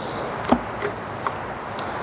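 A sharp metallic knock about half a second in, then a couple of light clicks, over a steady background hiss: a billet aluminium thermostat housing being handled and seated down onto the engine.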